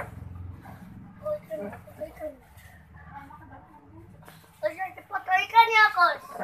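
People talking, faint in the first half and louder from a little before the end.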